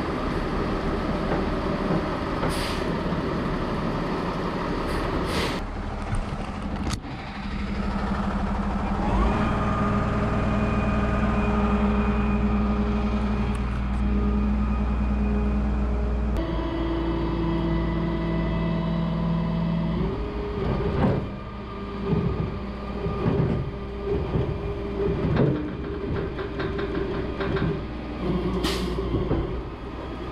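Flatbed (rollback) tow truck running its bed hydraulics, the engine held at a raised, steady hum while the deck is tilted and slid back for loading. Over the last third the sound rises and falls unevenly as the controls are worked.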